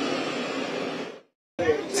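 Steady city street traffic noise that cuts off abruptly about a second in to a moment of dead silence, after which a person's voice begins near the end.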